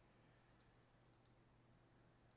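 Near silence with faint clicks of a computer mouse, in two quick pairs about half a second and a second in, over a low steady hum.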